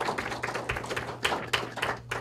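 Audience clapping: a short round of applause that dies away near the end.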